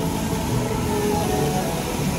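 Steady outdoor background noise with faint music playing under it.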